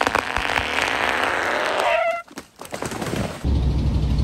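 A stretch of noisy hiss and crackle with a short high-pitched call near the middle. About three and a half seconds in, an old Ford pickup's engine comes in with a steady low drone.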